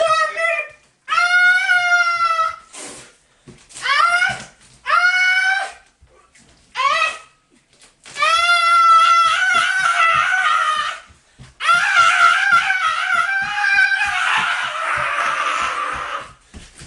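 High-pitched vocal shrieking in a series of long, wordless cries, many bending up in pitch at the end. A longer one comes about halfway through, and the last, near the end, turns hoarse and raspy.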